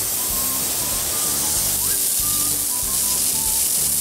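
Irrigation sprinkler head hissing steadily as compressed air drives a fine mist of water out of the line during a winterizing blowout, with background music underneath.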